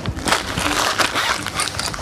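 Rustling and crinkling of a fabric drawstring bag as a rolled canvas is pulled out of it and handled, with irregular small crackles.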